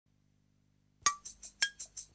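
Near silence, then about a second in a fast, even run of bright clinks begins, roughly five a second, each with a short ringing tone. This is the clinking percussion at the start of a piece of music.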